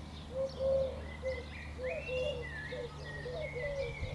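A pigeon cooing in a run of short, low, repeated notes, with another bird's higher whistled notes sliding above it. A steady low hum runs underneath.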